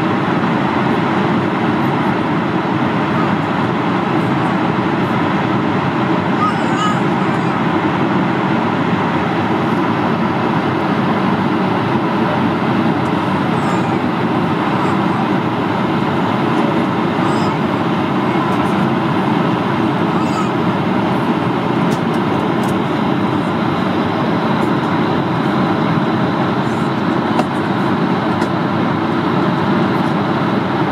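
Steady cabin noise inside an Airbus A220-100 jetliner at cruise: an even rush of airflow over the fuselage blended with the hum of its Pratt & Whitney geared turbofan engines, unchanging throughout.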